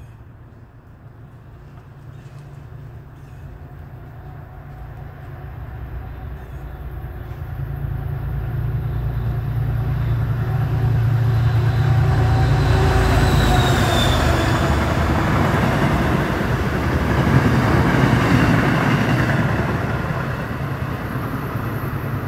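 An MBTA commuter rail train, hauled by a diesel locomotive, approaching and passing: a steady low engine drone and rolling noise grow louder for about twelve seconds, stay loudest through the second half, then ease off a little. About two-thirds of the way through, a faint high whine drops in pitch as it goes by.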